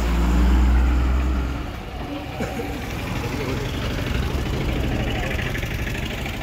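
Bus engine running close by, its low rumble loudest for the first second and a half, then settling into a steadier, quieter engine hum.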